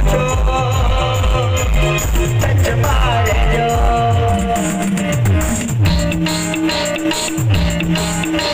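Timli dance music played live by a street band over loudspeakers: a fast steady beat of deep drum hits that drop in pitch, under a melody line. About three seconds in the drum beat thins out, and a held bass note comes in near six seconds.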